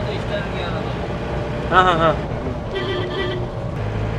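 Inside the cab of a Force Tempo Traveller van under way: a steady low drone of its diesel engine and road noise, with a brief burst of voice about halfway through.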